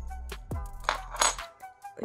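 Background music with a steady beat, with a brief clinking of metal keys on a key ring about a second in.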